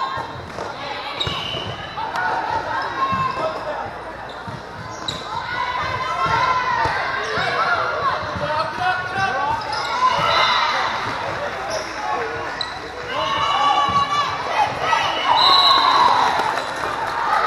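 Indoor volleyball rally in a large echoing hall: the ball is struck several times while players call out over a background of many voices. Voices rise toward the end as the point is won.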